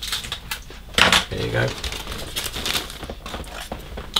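Plastic model-kit sprues in their clear bag being handled and lifted out of the cardboard box: a run of light, irregular clicks and rattles.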